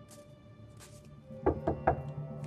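Soft sustained music bed, then about a second and a half in, a quick series of knocks on a door.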